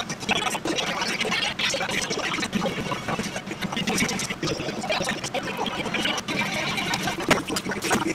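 Beef and onions in sauce sizzling in a frying pan, a steady hiss broken by frequent small crackles.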